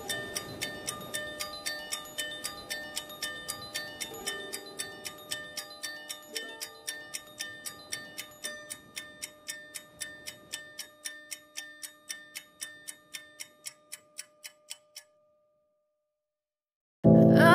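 Background music with a ticking, clock-like beat about three ticks a second over soft held tones. It fades out gradually and stops shortly before the end.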